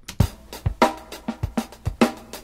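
A one-bar drum-kit loop playing back on cycle: low kick-drum thumps, four of them, under sharper snare and cymbal hits in a steady groove, the bar cut from kick-drum transient to kick-drum transient.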